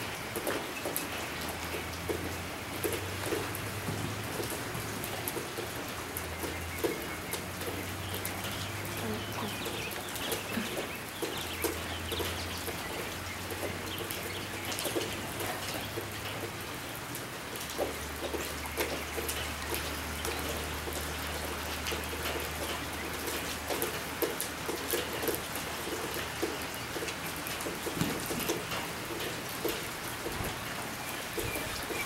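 Rain pattering steadily on a metal roof, a dense even hiss dotted with many small taps.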